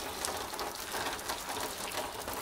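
Heavy rain falling, a steady hiss of water speckled with many small drop ticks: a downpour coming down like a river.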